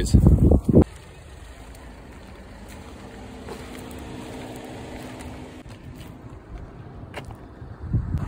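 Wind buffeting the microphone for under a second. Then a steady low hum of a distant motor vehicle engine, with a faint steady drone in it, swelling slightly midway and fading out about six seconds in.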